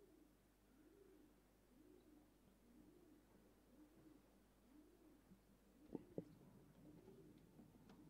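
Faint pigeon cooing: a low, rolling coo repeated about once a second. Two sharp clicks close together about six seconds in.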